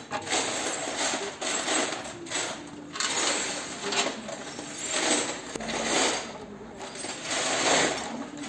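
Metal clinking and scraping of an exhaust silencer and its mounting hardware being handled and fitted to the bracket, with a hand tool working a bolt. The sound comes in uneven bursts about once a second.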